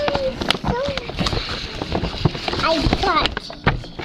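Tissue paper rustling and crinkling in irregular bursts as a gift is pulled from a gift bag and its box is opened. A child's brief exclamation comes near the start, with a few short voice sounds later on.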